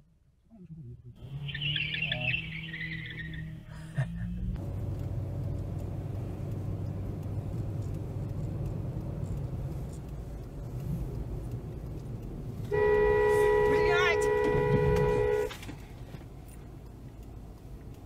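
A car horn held for nearly three seconds, two tones sounding together, over the steady road and engine noise of a car driving.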